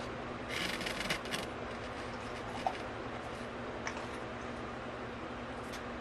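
A person eating a chicken wing close to the microphone, over a steady background hiss: a short crunchy chewing burst about half a second in, then a few faint mouth clicks.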